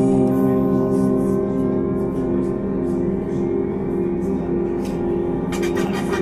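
Yamaha Montage synthesizer sounding a sustained chord on a layered patch of FM bell tones, a pad and sampled string effects, held at an even level. The Super Knob is blending the sampled AWM layers with the FM-X engine.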